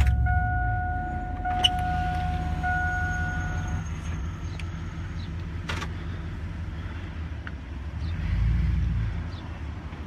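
Pickup truck's engine idling with a steady low rumble heard from inside the cab, while an electric power-window motor whines steadily and stops about four seconds in. A single sharp click comes near the middle, and the engine rumble swells near the end as the truck pulls away.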